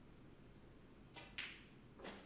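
Snooker shot: a faint tap and then a sharp click of cue and ball about a second in, the sharp click the loudest sound, with a brief ring.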